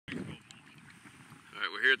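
A brief buffet of wind on the microphone, then faint outdoor wind noise, before a man starts talking.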